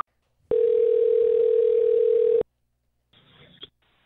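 Telephone ringback tone on a phone line: one steady ring about two seconds long, the sound the caller hears while the outgoing call rings at the other end. Near the end the line opens with faint noise as the call is picked up.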